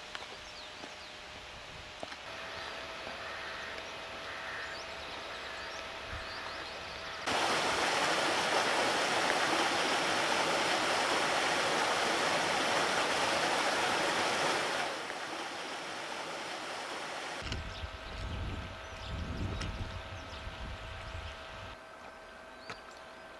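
Shallow rocky beck rushing over stones, a steady rush of water that starts abruptly about seven seconds in and cuts off abruptly about eight seconds later. Quieter outdoor sound surrounds it, with a low rumble near the end.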